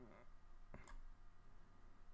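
Faint computer mouse clicks over near silence, the clearest a couple close together just under a second in.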